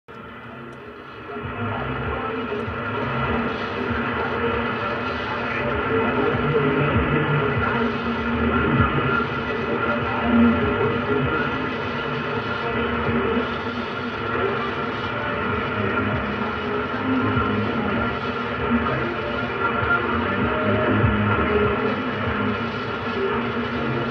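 Car radio on the shortwave AM band receiving a very weak, distant Voice of America broadcast on 6195 kHz: steady hiss and static with the programme faintly audible underneath, muffled and narrow in sound. It gets louder about one and a half seconds in.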